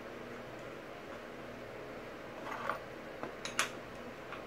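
A few faint small clicks in the second half as an axle nut is threaded onto a skateboard truck axle by hand, over steady low room hiss.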